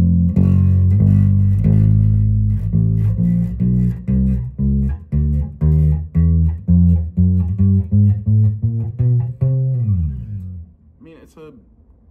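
Gretsch G2220 Junior Jet II electric bass played through an amp, its low notes left to ring out to show off the low end. A few sustained low notes give way to a run of single plucked notes, about two or three a second. A note slides down in pitch about ten seconds in, after which the bass goes much quieter.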